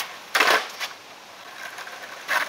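Skateboard clattering down onto asphalt about half a second in, after being flicked into a vertical flip, with a smaller knock shortly after.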